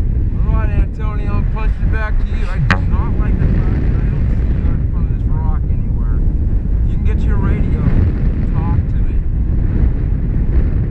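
Airflow buffeting the action camera's microphone in paraglider flight, a steady loud low rush, with bursts of indistinct talk over it several times.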